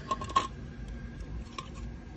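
Small metallic clicks and clinks from hardware being handled at the wheel, with a sharp click about a third of a second in and a few fainter ticks later.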